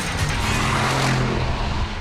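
Mercedes-Benz SLR McLaren Roadster's supercharged V8 running as the car drives by, with background music.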